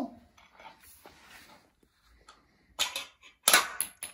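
Plastic clatter from a toy finger-basketball game: light ticks, then a few sharp clicks and knocks about three seconds in as the spring launcher fires and the small plastic ball strikes the hoop and floor.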